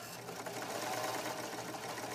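Baby Lock serger (overlock machine) starting up at the very beginning and then running steadily at speed, stitching and trimming the edge of a piece of fabric with its knife.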